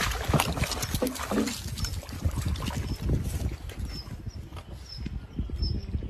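Water splashing and churning for about the first second and a half, then a steady low rumble with faint high chirps repeating about every half second in the second half.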